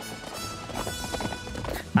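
Film soundtrack of horses galloping: a quick, uneven clatter of hoofbeats under music.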